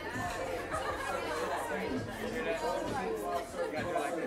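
Several people talking at once, indistinct chatter with no single clear voice, over a low steady hum.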